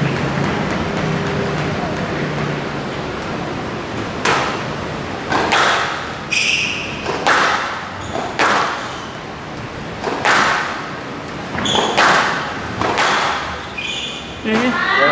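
A squash rally: sharp hits of racquet on ball and ball on the court walls, about one every one to two seconds from about four seconds in, each echoing in the hall, with short high squeaks of shoes on the court floor between them.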